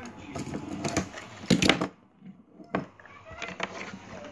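Hard plastic toy railway pieces being handled and fitted together: a run of small clicks and clacks, with one louder clack about one and a half seconds in.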